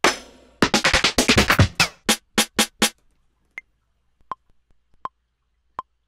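Snare drum samples on a Maschine Studio being previewed one after another in quick succession. Then a metronome ticks four times at a steady 81 BPM, about three-quarters of a second apart, the first tick higher-pitched than the rest.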